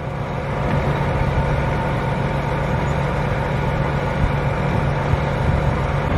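Farm tractor's diesel engine idling steadily, a constant low hum with an even tone.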